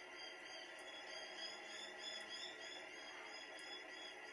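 Faint steady room tone with a low electrical hum, broken by three faint short clicks spread about a second and a half apart.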